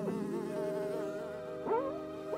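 Cartoon sound effect of a horsefly buzzing, its pitch swooping up and down as it flies around.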